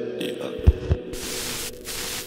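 Electronic ambient drone, a steady hum, with two deep bass thuds close together under a second in, giving way to a wash of hiss.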